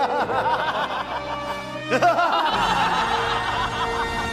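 A group of men and a woman laughing together in a long, exaggerated villain's laugh, with music underneath.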